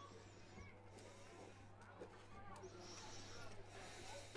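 Near silence: faint, distant voices over a steady low hum.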